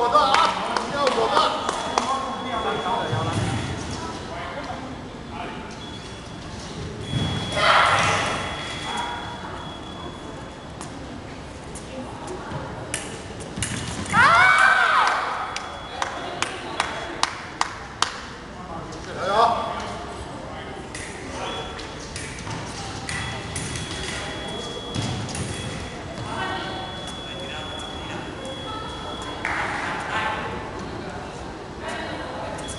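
Foil fencing bout: sharp metallic clicks of foil blades and thumps of footwork on the piste, with several loud voiced shouts between the exchanges.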